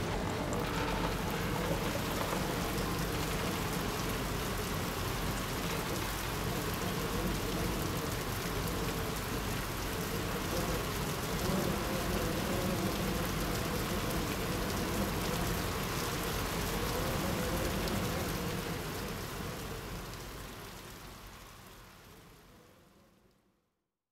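Steady hiss of noise like rain, with a faint wavering low sound beneath it. It fades out over the last several seconds.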